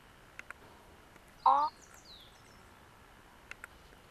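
Birds calling over a quiet background: one short, loud pitched call about one and a half seconds in, then a thin high chirp that falls in pitch just after it.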